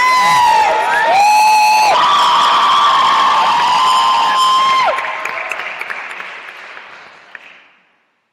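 Audience applauding and cheering, with several high, held whoops over the clapping. The whoops stop about five seconds in and the applause fades away near the end.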